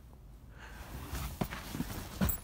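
Quiet handling noise of a soft-sided fabric suitcase being touched and moved, a low rustling with a few light knocks in the second half.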